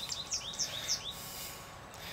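Small birds chirping: a quick run of short, high chirps in the first second, over a faint steady outdoor hiss.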